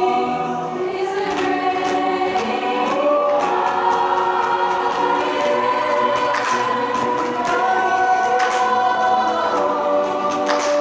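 A choir of many voices singing a Christmas song in held harmony, with piano accompaniment.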